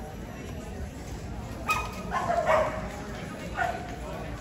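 A dog barking a few short times, starting a little before halfway through and again near the end, over a background murmur of voices.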